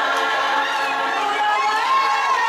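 A group of women singing together in several voices, held on long notes that glide together in pitch.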